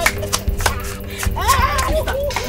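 Dramatic background film music: a fast, evenly spaced clicking beat, about four strokes a second, over held low notes. A woman's shout rises through it about one and a half seconds in.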